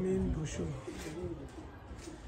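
A person's voice, low and pitched, strongest in the first second and fainter after, like indistinct talk.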